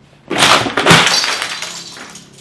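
A loud crash of something breaking: two hits about half a second apart, then a ringing clatter that fades over about a second.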